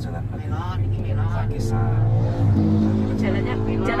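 Car engine running, heard from inside the cabin while the car drives, its hum growing louder about halfway through as it picks up speed. Voices talk over it.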